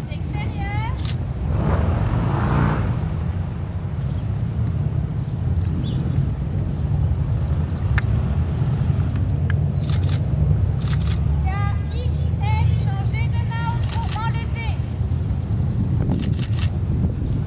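A steady low rumble runs throughout. Short, high pitched calls come about half a second in and again in a run between about 11 and 15 seconds.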